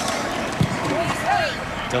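A single thud of a football being kicked for an extra point, about half a second in, over steady stadium background noise with some distant shouting voices.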